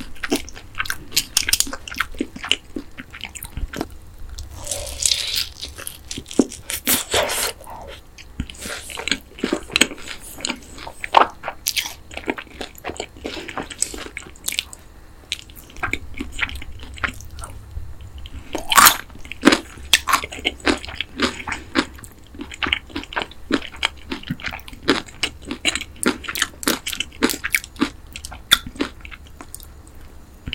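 Close-miked biting and chewing of boneless fried chicken in sweet-spicy yangnyeom sauce, a steady stream of crisp crunches and wet mouth sounds. The sharpest crunch comes a little past halfway.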